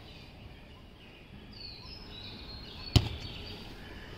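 A single sharp thud of a football being kicked on an artificial-turf pitch about three seconds in, over quiet outdoor ambience with faint bird chirps.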